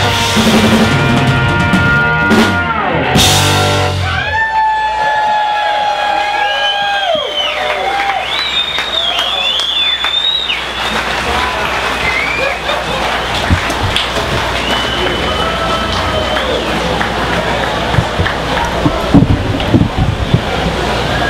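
A live blues-rock band holding a final chord on electric guitar, bass and drums, which ends about three and a half seconds in. Then the audience applauds, cheers and whistles.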